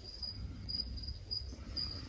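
Cricket chirping steadily, short high chirps about two to three a second, over a faint low hum.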